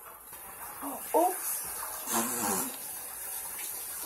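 A woman's voice: a sharp exclamation of "Oh!" about a second in, then another short vocal sound about a second later, over a steady faint hiss.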